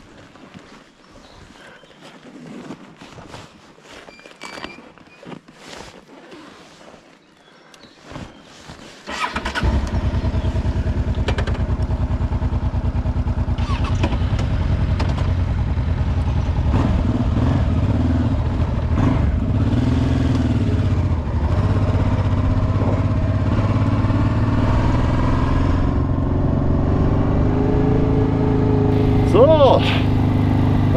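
Scattered small clicks and knocks, then about nine seconds in a motorcycle engine starts and runs steadily. In the last few seconds it rises in pitch as the bike pulls away.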